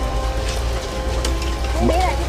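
Food deep-frying in woks of hot oil: a steady sizzle with a few light clicks of metal utensils, over a low hum.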